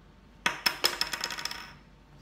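Klask game pieces, the small plastic ball and the magnetic striker, clacking against each other and the wooden rim of the board. A quick rattling run of clicks starts about half a second in and dies away before the end.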